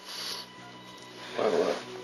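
Soft, steady dramatic background music, with a breath at the start and a short voiced sound from a person about one and a half seconds in.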